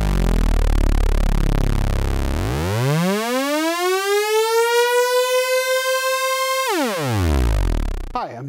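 A synthesizer tone rich in harmonics, sweeping in pitch. It sits as a deep low drone, then about two and a half seconds in rises smoothly to a held note, and near the end slides back down to the low drone.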